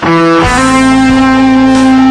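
Les Paul-style electric guitar playing a solo line: a short note, then about half a second in, one note held with long sustain.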